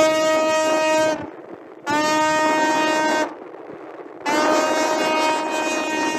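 Tugboat horn sounding three long blasts of one steady low note rich in overtones, with short gaps between them: a celebratory fanfare as the freed container ship is towed along the canal. The first blast is already sounding at the start, and the third runs on past the end.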